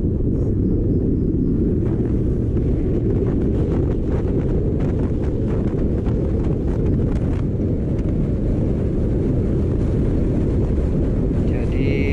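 Steady low wind buffeting on the camera microphone, mixed with the road and engine rumble of a Yamaha Aerox 155 Connected scooter being ridden.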